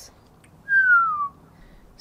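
A single clear whistled note, about half a second long, gliding down in pitch.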